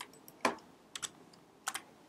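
A handful of separate keystrokes on a computer keyboard, spaced roughly half a second apart.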